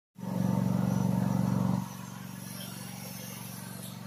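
A motor running steadily with a low, even pulse. It is loud for about the first two seconds, then noticeably quieter.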